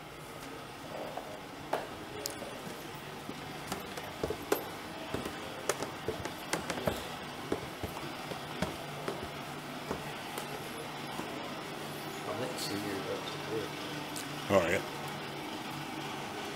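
Indistinct voices in a large room over a steady low hum, with scattered light clicks and knocks and one louder knock near the end.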